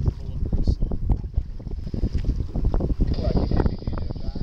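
Wind buffeting the microphone aboard a boat at sea, a gusty, uneven rumble.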